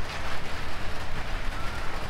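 Steady rain falling, an even hiss with some low rumble underneath.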